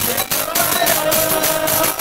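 A group of men singing a chant, one voice holding a long note, over rhythmic hand-played percussion.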